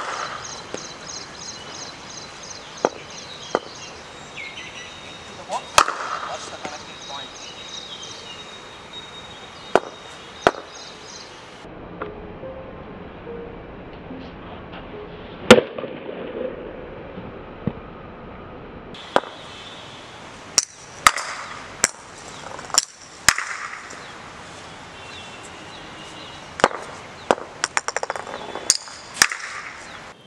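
Cricket bat striking balls in sharp single cracks, about fifteen spread unevenly through the drills, several in quick succession in the last ten seconds and the loudest about halfway through.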